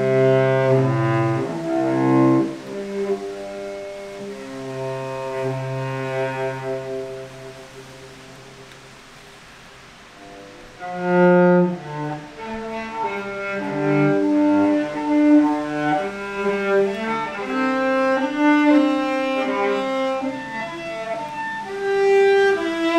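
Solo cello played with a bow: held notes that fade to a quiet passage about eight seconds in, then a strong low note around eleven seconds leads into a busier line of shorter, changing notes.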